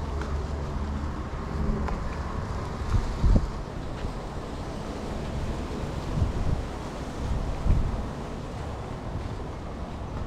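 Wind buffeting the microphone: a steady low rumble with a few stronger gusts, about three seconds in, around six seconds and again near eight seconds.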